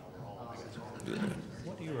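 Speech only: a man's quiet 'yeah' about a second in, over low room noise.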